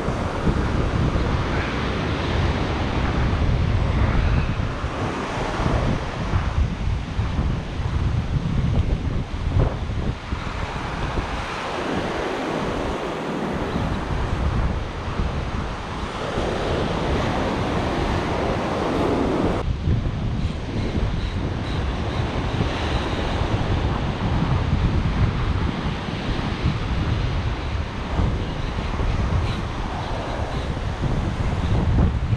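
Surf breaking and washing up the beach around the angler's feet, with wind buffeting the microphone in a heavy low rumble. A louder surge of water comes about two-thirds of the way through.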